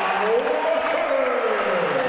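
Arena crowd cheering and applauding a made basket, with one long drawn-out call from a single voice rising and falling over the noise.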